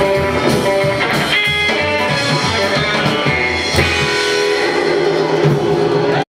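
Live rockabilly band playing: guitars strumming over a drum kit, with a last sung word at the start.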